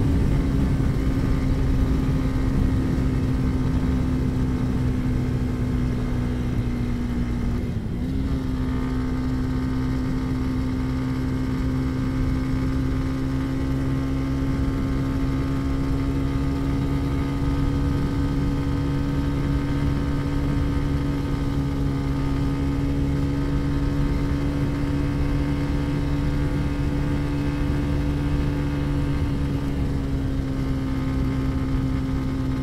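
Motorcycle engine running steadily at a cruise of about 95 km/h, heard through a helmet-mounted lavalier mic along with wind and road rumble. The engine note sags slightly and breaks briefly about eight seconds in, then holds steady.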